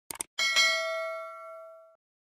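A quick double mouse-click sound effect, then a bright bell ding that rings for about a second and a half, fading, and cuts off: the click-and-bell sound of a subscribe-button animation.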